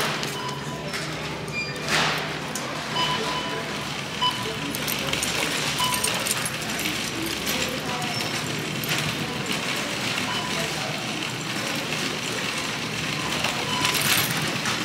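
Busy store ambience: the background chatter of many shoppers, faint music and scattered short electronic beeps.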